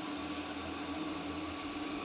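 Steady faint hum over a soft background hiss.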